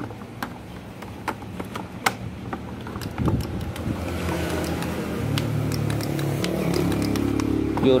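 Hard plastic clicks and knocks as cordless-tool battery packs are handled and set down. From about three seconds in, an engine hum builds steadily louder in the background.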